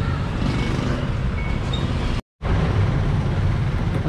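Steady motor-vehicle engine and traffic noise, broken by a brief cut to total silence a little over two seconds in.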